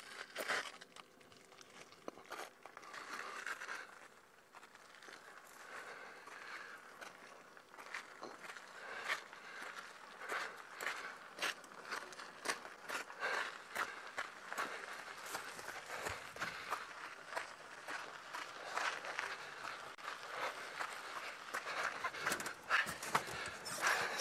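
Irregular crunching footsteps on dry grass and dirt, fairly quiet at first and busier after several seconds.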